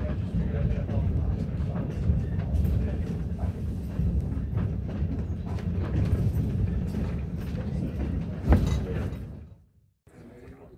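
Railroad train running close by: a steady low rumble with irregular clicks and a louder knock near the end, fading out just before the end.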